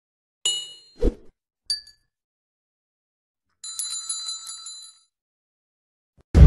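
Sound effects for a subscribe button: a bright chime about half a second in, a low thud just after, a short high ding, then a small notification bell rung rapidly for just over a second.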